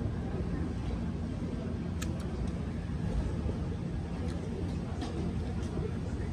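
Steady low street background noise with a low hum, and one sharp click about two seconds in.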